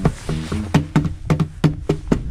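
Music: a one-string acoustic guitar played hard, with low plucked notes and a quick rhythm of sharp percussive strikes, starting the song with no singing yet.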